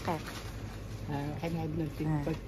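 A person's voice repeating short, sing-song syllables that glide up and down in pitch.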